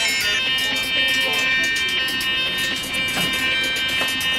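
Electronic synthesizer drone: a cluster of steady high tones held throughout, with rapid clicking pulses running over it. A brief fragment of a voice comes through near the start.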